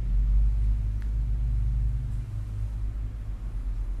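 Low, steady rumble of street traffic.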